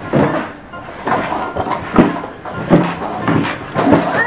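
Plastic ride-on toys, a tricycle and a plastic riding horse, knocking and clattering as children ride them, with a knock about every half second.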